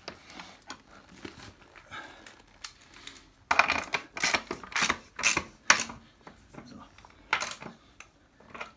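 A wrench tightening the rear axle of a motorcycle wheel. After some quiet handling, a run of sharp metallic clicks comes about three a second for a couple of seconds, with one more click near the end.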